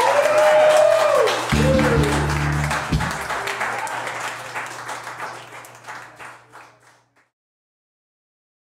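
Small bar audience applauding and cheering at the end of a live song, with a short low sustained instrument note about a second and a half in. The applause thins and fades out to silence near the end.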